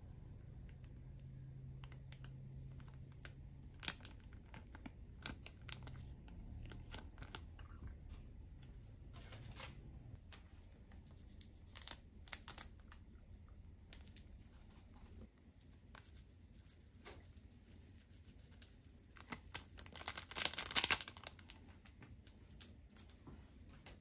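Small condiment sachets of eel sauce and powdered pepper being handled, squeezed and torn: scattered light crinkles and clicks, with a louder burst of crinkling and tearing about twenty seconds in.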